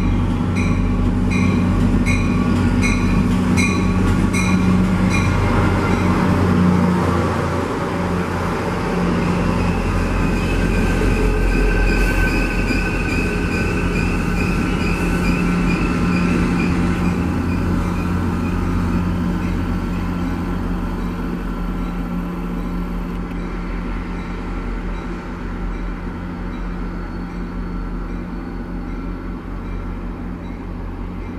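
Diesel-hauled passenger train passing through a station, its engine running throughout. A bell rings about twice a second for the first five seconds or so. The wheels squeal for several seconds in the middle, and the sound fades as the train moves away.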